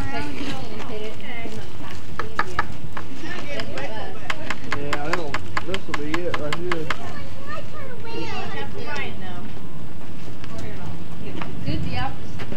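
Indistinct chatter and calls of children's and adults' voices, with a quick run of sharp clicks, several a second, in the middle.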